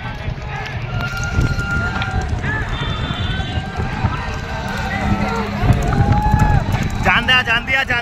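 A pack of motorcycle engines running close behind a racing bullock cart, with men shouting over them. Near the end comes a dense run of quick, high cries.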